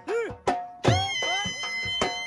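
Dhol and been folk music for jhumar dancing: a reed pipe plays sliding, arching notes and holds one long high note, over dhol drum strokes.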